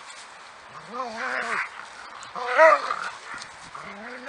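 A dog whining twice in short bursts while playing with a large stick, once about a second in and again in the middle.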